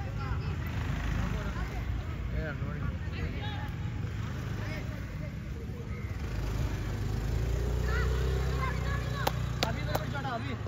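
Shouts and calls of footballers and onlookers across an outdoor pitch, over a steady low rumble that swells for a couple of seconds past the middle. Two sharp knocks come close together near the end.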